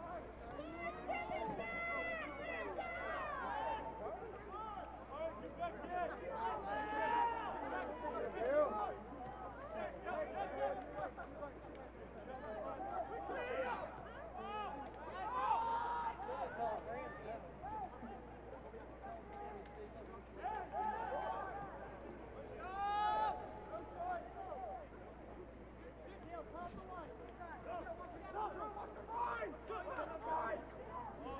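Several voices calling and shouting across a soccer field during play, overlapping one another, with a few louder calls along the way. A steady low hum runs underneath.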